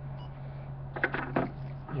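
A steady low hum, with a short cluster of rustling handling sounds about a second in as a plastic whistle is picked up.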